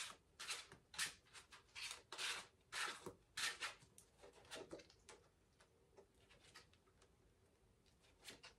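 A deck of tarot cards being shuffled and handled by hand: a run of soft, irregular papery rustles and slides for about five seconds, then only a few faint ones.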